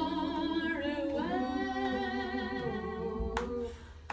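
A small group of voices singing unaccompanied in close harmony, holding a long chord that cuts off about three seconds in, followed by a brief pause.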